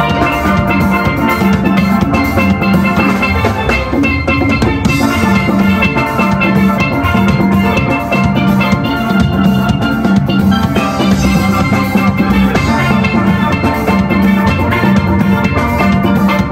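A steel band playing: a row of steelpans ringing out a melody and chords over a steady drum beat.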